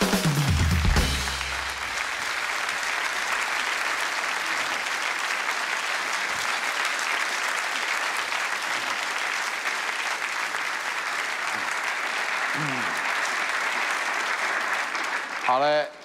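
Studio audience applauding steadily, with the house band playing a short bass-and-drums sting in the first second or two.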